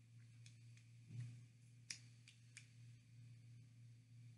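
Near silence over a steady low hum, broken by a handful of faint wet mouth clicks and lip smacks from tasting a seasoning powder, the loudest about two seconds in.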